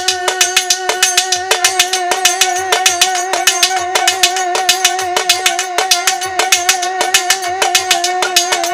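Violin holding one long wavering note with vibrato over fast, steady folk percussion: a drum beat underneath and sharp high strokes on top.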